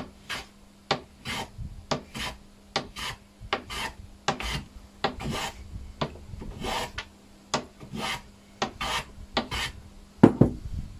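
Metal hand plane shaving the end of a small wood block on a shooting board: a steady series of strokes, about one a second, each a sharp click followed by a short rasping hiss of the cut.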